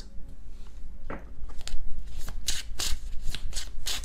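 A tarot card deck being shuffled by hand: irregular quick card snaps and rustles, sparse at first and coming thick and fast in the second half.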